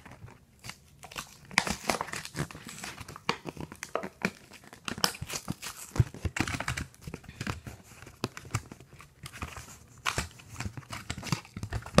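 Plastic blister pack of a carded Hot Wheels car being crinkled and torn open by hand, with irregular crackles and rips.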